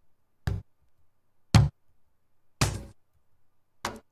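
Individual drum hits sliced from a tribal house drum loop, played back one at a time: four short, punchy hits about a second apart, each with a deep body and a sharp attack, the third ringing a little longer.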